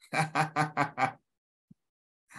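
A person laughing: about five quick, evenly spaced bursts of laughter in the first second, then silence.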